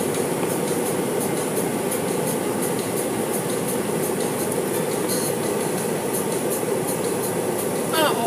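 Steady mechanical rumble with faint, quick ticking over it, about two or three ticks a second.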